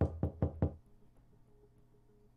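Four quick knocks on a door in close succession, all within the first second.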